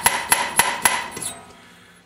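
A steel valve bounced repeatedly on its newly cut seat in a cast-iron Chevrolet cylinder head (casting 441), tapping metal on metal about four times a second. The taps die away a little over a second in. The bouncing marks the Sharpie-inked valve face to show where the seat's 30- and 60-degree cuts meet it.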